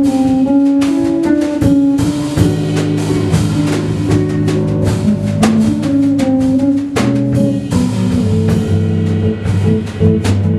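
A drum kit and an electric bass guitar playing live together: the bass plays a moving melodic line of held notes while the drums keep up busy strokes and cymbal hits.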